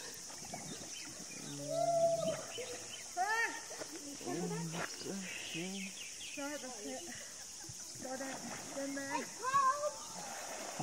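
People's voices calling out and exclaiming in short bursts, with a drawn-out low call about two seconds in and quick rising-and-falling yelps later.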